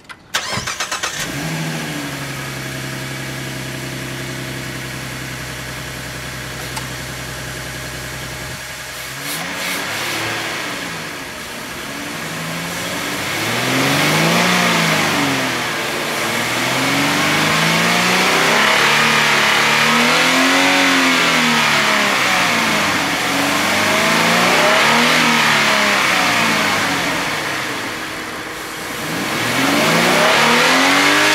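2014 Ford Mustang engine fitted with an aftermarket cold air intake starting with a sudden flare, then idling steadily. About nine seconds in it is revved several times, each rev rising and falling in pitch over a couple of seconds.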